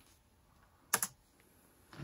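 A single computer key press, a short double click about a second in, against otherwise near silence.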